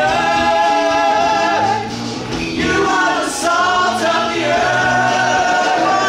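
Musical-theatre cast singing together over backing music, holding long sustained notes, with a short break in the singing a little after two seconds in.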